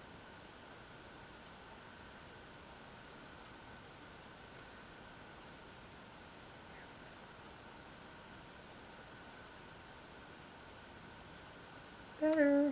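Near silence: a steady background hiss with a faint, steady high tone.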